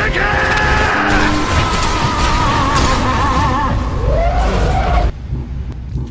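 Anime battle soundtrack: a massed battle cry of charging soldiers over dramatic music, with heavy booming impacts of debris striking them. It cuts off abruptly about five seconds in.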